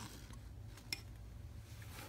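Light metallic clicks from handling the network video recorder's opened metal front panel and drive bays: a faint tick, then one sharp click about a second in, over a low steady hum.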